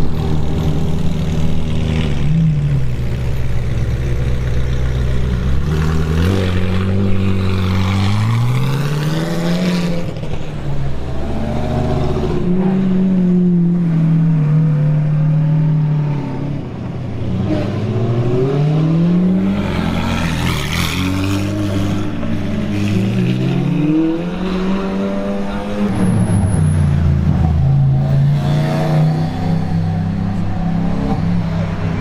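Supercar engines running and revving on a street as cars drive past. The note holds steady at first, then repeatedly climbs and drops back as the cars accelerate through low gears.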